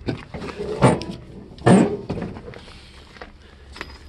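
Clunks from a 1964 Oldsmobile Jetstar 88's steel door and latch being worked: three sharp knocks in the first two seconds, then quieter handling noise.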